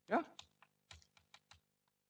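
Chalk clicking and tapping against a blackboard as letters are written, a quick run of sharp clicks over about a second and a half. The loudest sound is a brief rising tone right at the start.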